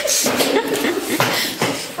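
Indistinct children's voices with several sharp knocks and footfalls on a hard floor.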